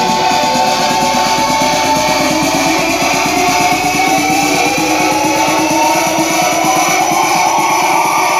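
Loud music with guitar and a steady, fast drum beat.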